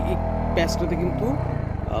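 Royal Enfield Hunter 350's single-cylinder engine under way: its note rises in pitch during the first second, then eases back down as the throttle comes off.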